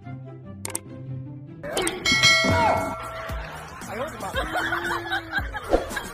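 Background music with a repeating beat, and a loud metallic clang about two seconds in that rings on with several steady tones and fades out over about a second and a half.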